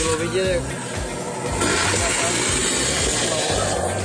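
Vacuum cleaner hose sucking leaves and dirt out of a car's cabin-filter housing under the windscreen cowl: a steady rushing hiss that gets louder about a second and a half in.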